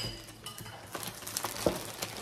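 Clear cellophane wrapping on a large plastic Easter egg crinkling and crackling in short scattered clicks as hands handle it, with a soft knock near the end.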